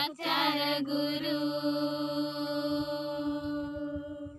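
A high solo voice singing a devotional song with the refrain 'guru', ending on one long held note from about a second in.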